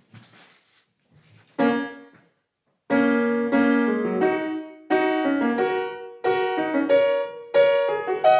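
Grand piano: a slow practice exercise of two alternating chords played in a fixed rhythm, an exercise for loosening the hand and firming the grip. A single chord comes about a second and a half in, then after a pause the chords are struck again and again, each one ringing and fading before the next.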